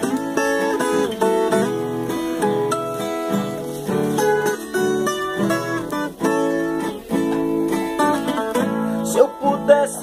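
Viola caipira, the ten-string Brazilian folk guitar, playing a plucked instrumental introduction: a melody of separate notes over lower strings.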